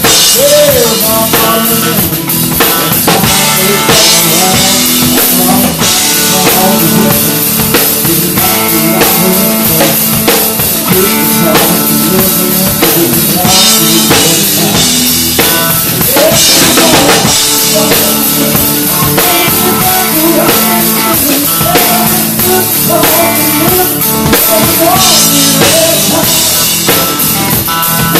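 Live country band playing at full volume, with the drum kit loudest: snare, kick drum and cymbals struck steadily and close up. A lead melody with sliding, bending notes runs over the drums.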